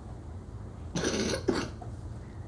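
A person coughing twice in quick succession about a second in.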